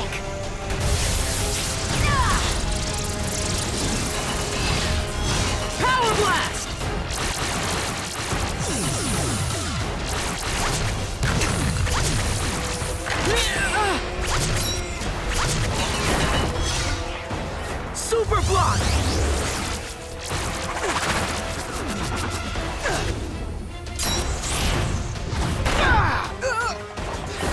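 Cartoon action soundtrack: background music mixed with sound effects of crashes, whooshes and machinery, with pitch-sweeping effects and scattered hits throughout.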